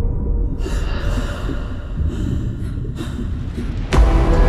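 Several heavy, gasping breaths by a person over a low rumbling drone. A sharp hit comes just before the end as louder music sets in.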